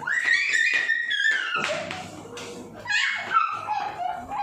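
A small puppy whining in a high pitch: one long, slightly falling whine, then a shorter one about three seconds in, with a sharp knock just after.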